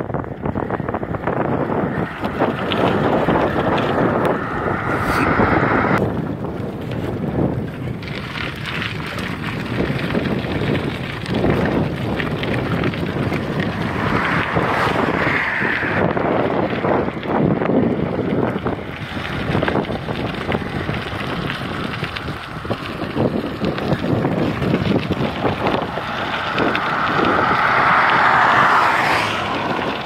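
Wind rushing over the microphone while cycling along a highway, a steady noisy roar that swells a few times.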